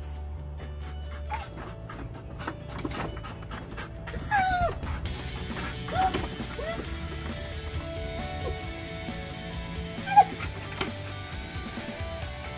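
Siberian husky whining in a few short calls over background music: one about four seconds in that slides down in pitch, another at about six seconds, and a sharp one near ten seconds.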